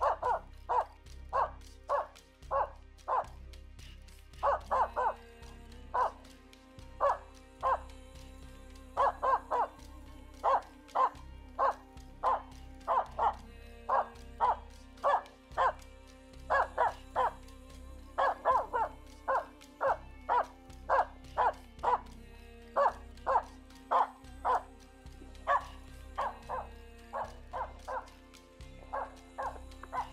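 Finnish Spitz barking in a long, rapid, steady series, about two barks a second with only short pauses: the repeated bark the breed gives at game up in a tree. Background music runs underneath.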